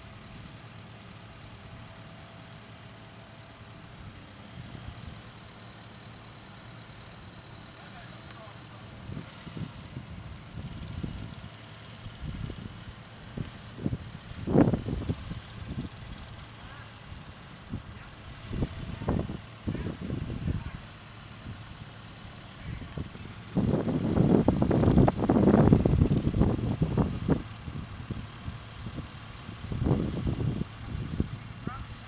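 A SkyTrak telehandler's diesel engine running as it carries and lowers a load, holding a steady low hum at first, then rising and falling in uneven surges, with a louder stretch of several seconds near the end.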